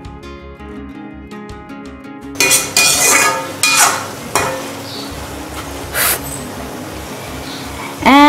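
Background music, then from about two and a half seconds in, a perforated metal spatula scraping and clinking against a steel kadhai as cooked noodles are stirred and tossed, with music continuing underneath.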